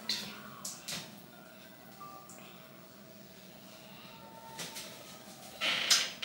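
Low room noise with a few faint clicks and taps from a smartphone being handled and tapped, and a brief louder rustle near the end.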